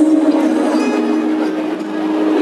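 Live pop band music in a large arena, playing a sustained chord of held notes with little bass.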